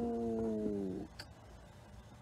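A man's voice holding one long sung note, the drawn-out end of the word "more", steady in pitch then sagging slightly and stopping about a second in; after it only faint background.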